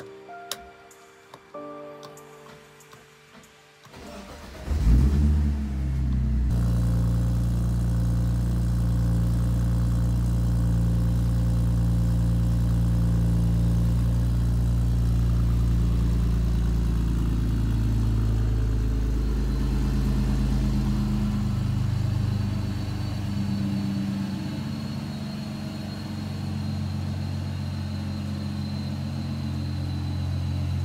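Supercharged BMW E46 330ci's rebuilt M54 3.0-litre straight-six starting about four seconds in, catching with a brief loud burst and then idling steadily on a cold start. The idle settles to a lower pitch about twenty seconds in as the engine begins to warm up.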